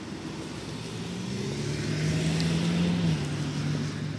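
Car on the street driving past, a steady low engine hum with tyre noise that swells over the first two to three seconds and eases off near the end.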